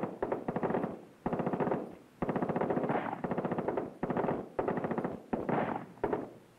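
Captured enemy automatic weapons fired in a recognition demonstration: six or seven short bursts of rapid automatic fire, each under a second long, with brief pauses between.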